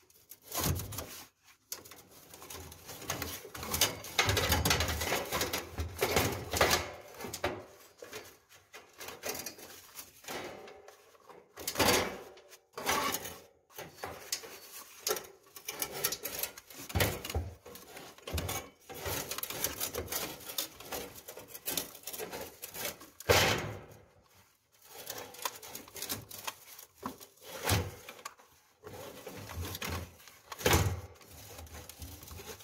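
Flat steel coil spring of a roller-shutter pulley scraping and rubbing against the metal drum as it is wound in by hand, in irregular bursts with a few sharper clacks.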